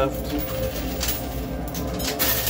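Quarters clicking and sliding on a coin pusher's playfield, with a few light metallic clicks, over a steady background of music and chatter.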